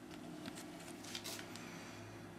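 Faint low steady hum with a few brief rustles.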